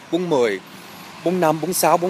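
A man's voice speaking in short, sing-song phrases close to the microphone, with a pause of about half a second in the middle.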